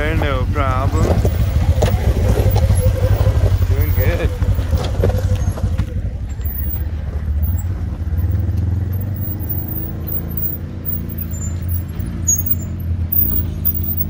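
Side-by-side UTV engines running at low revs while crawling over rocks, a steady deep rumble whose pitch wavers up and down in the second half as the throttle is worked.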